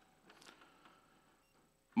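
Near silence: faint room tone during a pause in a talk, with a brief faint sound about half a second in.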